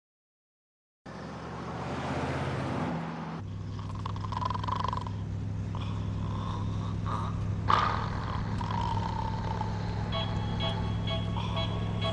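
Steady low drone of a vehicle engine, heard from inside, cutting in abruptly about a second in after silence. A single brief knock sounds just past the middle.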